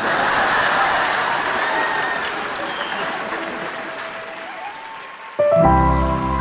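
Audience applause that fades gradually over about five seconds. About five and a half seconds in, music with long held notes and a deep bass comes in suddenly.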